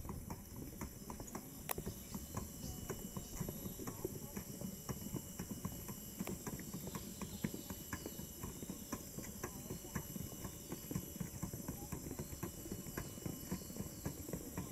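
Footsteps of several people walking along a paved path, an irregular patter of many steps.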